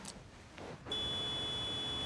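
A steady high-pitched beep-like tone comes on suddenly about a second in and holds, over a steady rushing hiss.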